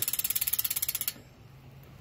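A bicycle's freewheel rear hub clicking rapidly, about eighteen clicks a second, as the rear wheel spins with the cranks still. It stops about a second in. The hub is loud.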